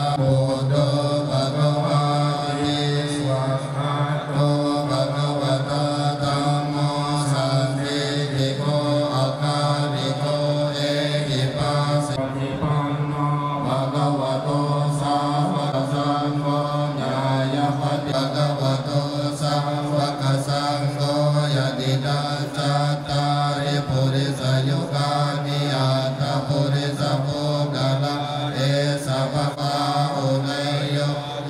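Buddhist monks chanting in unison: a low, steady drone held without a break.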